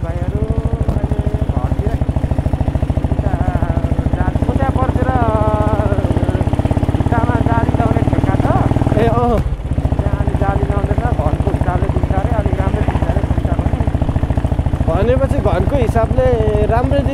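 Motorcycle engine running steadily while being ridden, its exhaust giving a rapid, even beat; the engine sound drops briefly about nine and a half seconds in, then carries on.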